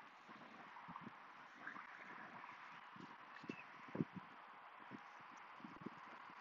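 Faint footfalls on a rubberised javelin runway as the thrower runs through his crossover steps and plants to throw: a handful of soft, irregular thuds, the strongest about four seconds in, over a low hiss of outdoor air.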